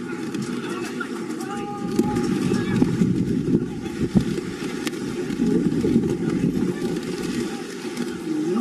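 Wind and rain noise buffeting an outdoor camera microphone in wet weather: a rough, uneven low rumble that surges in gusts, with faint calls from voices on a football pitch underneath.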